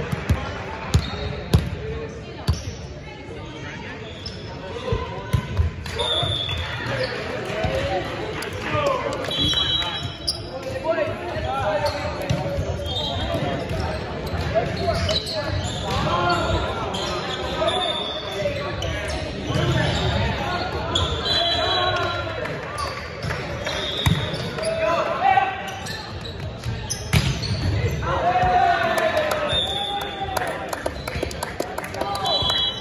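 A volleyball bounced a few times on a hardwood gym floor, sharp slaps in the first couple of seconds, followed by players' and spectators' voices calling out during play, echoing in a large hall.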